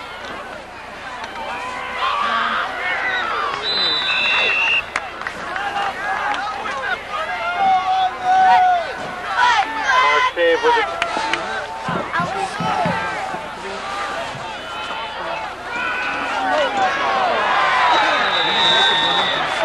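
Football crowd yelling and cheering during a play, many voices overlapping and growing louder as the play goes on. A short whistle blast sounds about four seconds in.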